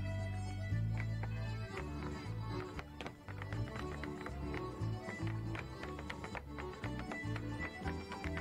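Irish traditional dance music playing, with the sharp taps of dancers' steps on the stage cutting through it.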